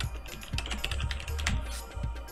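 Computer keyboard typing: a quick run of keystrokes, over background music with a steady low bass.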